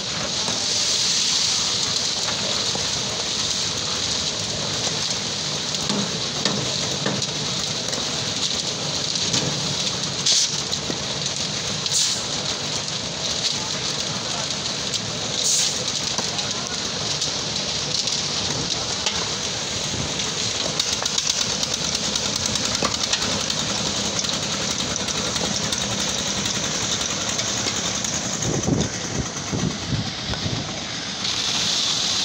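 Drum concrete mixer running, with stone and concrete churning in its rotating drum: a steady rushing noise with occasional knocks.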